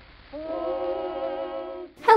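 Background music from an old early-20th-century vocal recording: voices hold one long chord with a slight vibrato. It comes in about a third of a second in after a brief lull, sounds thin and muffled like an old record, and cuts off abruptly just before the end.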